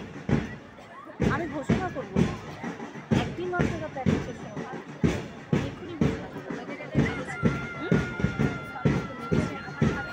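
Steady marching drumbeat for a parade, about two beats a second, with voices over it. A long steady tone is held over the last three seconds.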